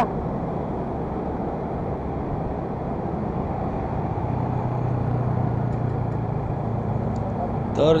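Motor scooter engine running steadily under way, mixed with wind and traffic noise. Its low hum strengthens slightly about four seconds in, then eases back.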